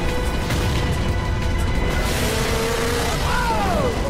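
Dramatic TV music over a car crash: a car flung off a ramp smashes down into a pile of stacked blocks, with a continuous heavy rumble and crunch. A falling tone sweeps down near the end.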